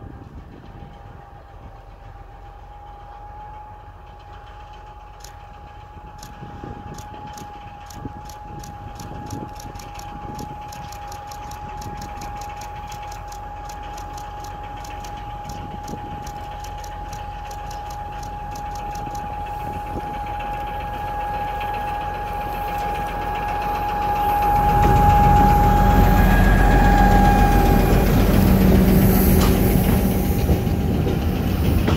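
ST44 diesel locomotive (an M62 with a two-stroke V12 diesel) approaching with a freight train, its engine sound growing steadily louder with a steady high tone running throughout. About 25 s in it passes close and turns loud, and the loaded coal wagons rumble by after it.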